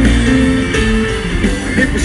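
Live country band playing an instrumental passage with no vocal, a guitar carrying a stepped melodic line over a steady bass.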